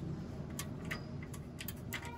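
Irregular light clicks and ticks of small metal parts being handled by a gloved hand while the wheel speed sensor's mounting bolt is worked free.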